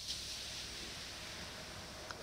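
Faint steady hiss of quiet room tone, with no distinct event.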